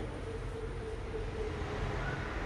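Steady low rumble with a faint held tone, under the cooking of a thick masala in a pan.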